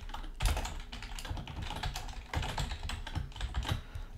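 Typing on a computer keyboard: a quick, continuous run of key clicks.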